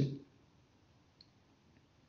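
Near silence in a small room, with two faint, very short clicks about a second and a second and three-quarters in.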